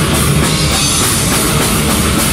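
A live heavy metal band playing loud: electric guitars over a drum kit keeping a steady beat.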